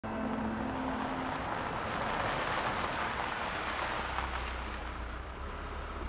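A car driving up and slowing to a stop: tyre noise on a dirt surface, loudest about two to three seconds in and easing off, over a steady low engine rumble.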